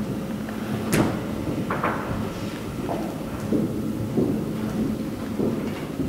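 A few irregular knocks and thuds, the sharpest about a second in and again shortly after, over a steady low hum.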